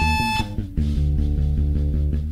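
Hardcore punk band recording in an instrumental passage: distorted electric guitar and bass playing held chords. There is a brief high-pitched squeal at the start and a short drop-out about half a second in.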